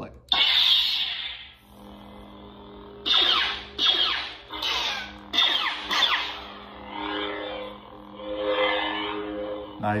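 Lightsaber sound effects played by a Proffie V2 board through the hilt's speaker: an ignition sound just after the start, then a steady pitched hum. Swing sounds rise over the hum, about five quick ones from about three seconds in and slower swells near the end.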